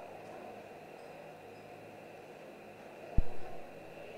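Faint, steady boxing-arena room tone, with a single short, dull thump about three seconds in.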